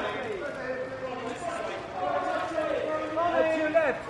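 Photographers' voices talking and calling out over one another, too overlapped to make out words.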